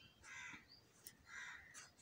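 Faint bird calls, a few harsh calls about a second apart, with nothing else but quiet room tone.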